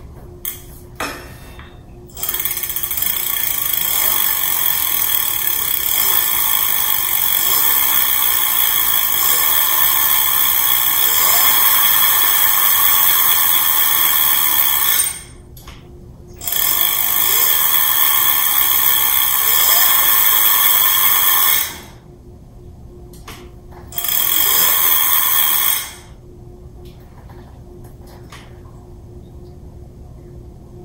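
A 1000-watt electric bike rear hub motor running under power at assist level five, with a high whine, in three runs: a long one of about thirteen seconds, then about five seconds, then about two. A couple of short clicks come just before the first run.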